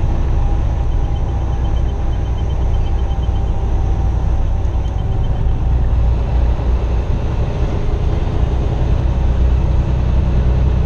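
Semi truck's diesel engine and road noise heard inside the cab at steady highway speed: a constant low drone.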